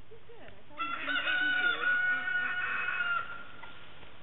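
One long animal call starting about a second in, a held pitched note lasting about two and a half seconds that trails off at the end.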